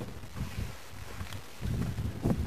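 Wind buffeting the microphone outdoors: an uneven low rumble with a little hiss, growing slightly louder near the end.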